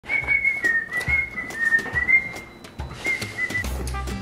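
A person whistling a tune: one thin, wavering high note stepping up and down for about two and a half seconds, then a short second phrase. A few soft thumps and clicks are heard underneath.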